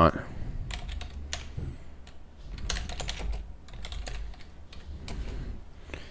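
Typing on a computer keyboard: a run of irregularly spaced keystroke clicks.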